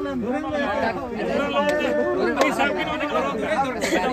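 Several men talking at once in overlapping chatter, with a few short sharp clicks in between.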